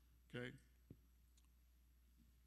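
Near silence with a faint, low, steady hum, broken by a single soft click about a second in.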